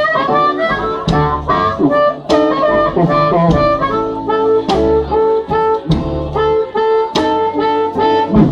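Live blues band with an amplified harmonica taking the lead, cupped against a handheld microphone, over electric guitar, piano, upright bass and drums. In the second half the harmonica repeats one held note in a steady rhythm.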